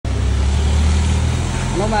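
A low, steady engine hum that eases off about a second and a half in. Near the end a voice calls out "aa, aa".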